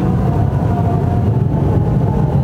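A steady low rumble with a hiss above it, at about the loudness of the speech around it.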